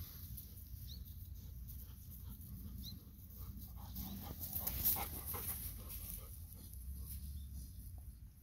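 Golden retriever panting as it trots through rice-paddy stubble, with the rustle of its steps in the dry stalks over a steady low rumble.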